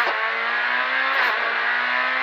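Proton Satria S2000 rally car's naturally aspirated four-cylinder engine, heard from inside the cabin. It runs hard at high, nearly steady revs, with a brief break a little over a second in.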